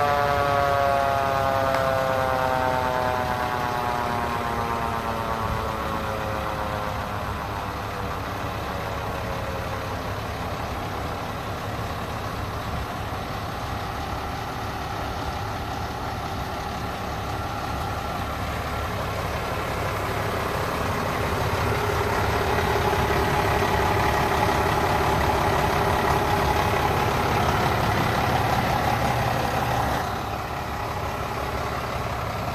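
A fire engine's mechanical siren winding down, its pitch falling steadily and fading over the first ten seconds or so, over the truck's engine idling. The idle grows louder about twenty seconds in and then runs steadily.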